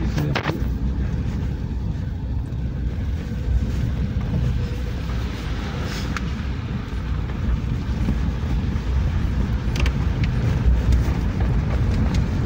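Steady low rumble of a vehicle driving over a rough, muddy unpaved road, heard from inside the cabin, with a few brief knocks and rattles.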